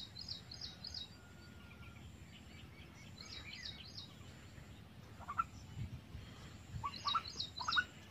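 Birds calling: a quick run of four or five high chirps comes three times, at the start, about three seconds in and near the end, with a few lower calls in the second half. The calls are faint over a quiet outdoor background.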